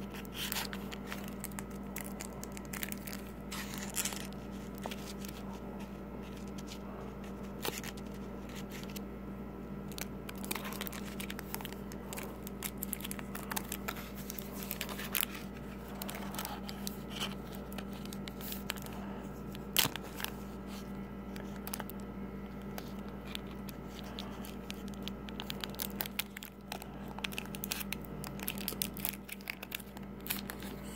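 Kitchen knife cutting through a Hershey's white chocolate bar with candy bits on a wooden cutting board: scattered snaps, crackles and scrapes, the sharpest about 20 seconds in. A steady low hum runs underneath.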